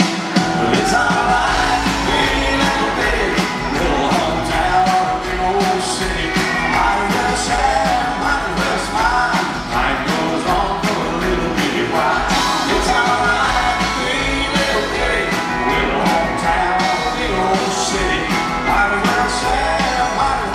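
Live country band playing, with acoustic and electric guitars, drums and bass, and a male lead voice singing over them.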